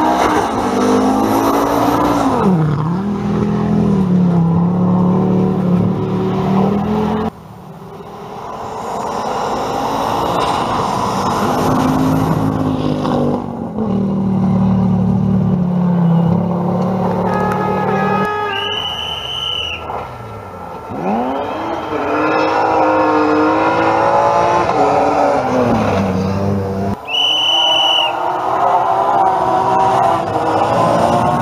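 Rally cars at full speed on a gravel stage, heard in several separate passes: engines revving hard, the pitch climbing and dropping with each gear change and lift. Twice, a shrill steady tone sounds for about a second over the engines.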